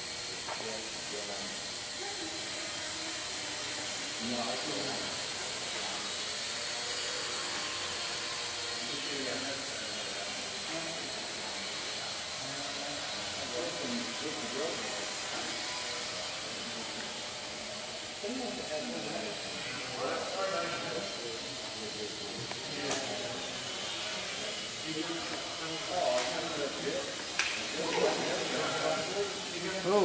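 Blade mQX micro quadcopter's four 8.5 mm brushed motors and propellers whirring steadily in flight, an even high-pitched whir that is a little softer in the second half. Faint voices can be heard in the background.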